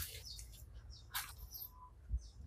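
Faint, brief bird chirps, a few short high notes.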